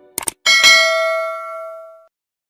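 Two quick clicks, then a bright bell ding that rings on and fades out over about a second and a half: a subscribe-button click and notification-bell sound effect.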